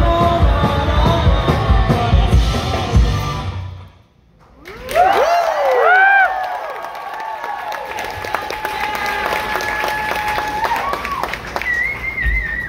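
Live rock band, with electric guitars, drums and keyboard, playing loud and cutting off suddenly about four seconds in. Crowd whoops and cheers follow. Then a single steady note is held for several seconds.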